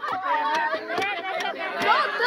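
Several people talking over one another in a group, with a few short sharp clicks.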